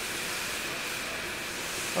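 Steady background hiss with no distinct event: outdoor ambient noise only.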